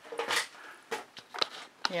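A few short, separate clicks and knocks of objects being handled, with a voice starting at the very end.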